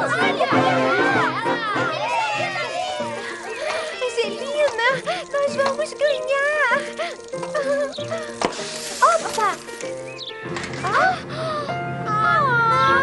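Cartoon soundtrack: background music with children's voices calling out and exclaiming over it, without clear words.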